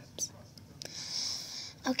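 A girl whispering breathily close to the microphone, with a hissing breath lasting about a second in the middle and a sharp click near the end.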